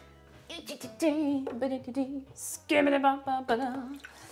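A woman's voice singing a few drawn-out, wavering notes of a tune, with short gaps between phrases.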